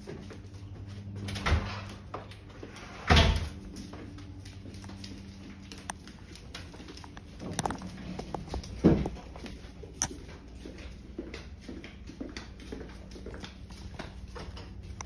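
A few dull thumps, the loudest about three seconds in, with scattered light knocks and clicks over a steady low hum: a house door being handled and dogs moving about on a hard floor.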